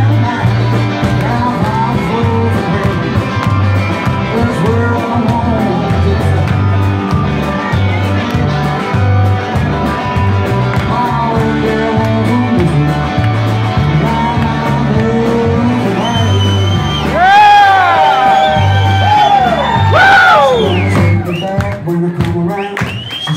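Live rock band playing an instrumental passage: electric guitar over a steady bass and drums. About three-quarters of the way through come loud high notes that bend up and down.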